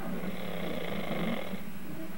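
A man snoring in his sleep with his mouth open: one long, noisy breath lasting over a second, over a steady low rumble.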